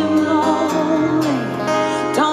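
A woman singing live over acoustic guitar in a slow country ballad.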